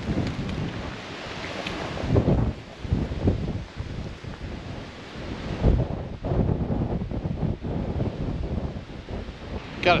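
Strong, gusty wind blowing across the camera's microphone, rising and falling in uneven blasts, the strongest about two, three and six seconds in.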